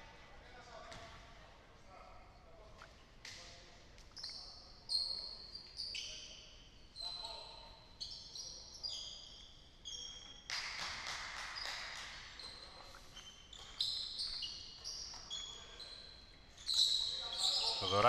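Basketball shoes squeaking on a hardwood court in many short, high chirps, with a basketball bouncing and players' voices in a large, near-empty arena. The sounds grow busier near the end as play restarts.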